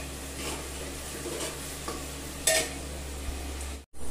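Sliced onions and bay leaves frying in oil in an open pressure cooker, sizzling steadily while a metal ladle stirs and scrapes against the pot, with one sharp knock about two and a half seconds in. The onions have been fried soft.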